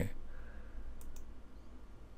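Two quick, faint clicks of a computer mouse button about a second in, as the play button on a web video is clicked.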